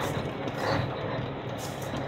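A truck's diesel engine running steadily as it rolls slowly along, heard from inside the cab.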